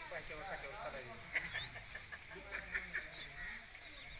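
Indistinct voices talking, with a few short high chirps in the background.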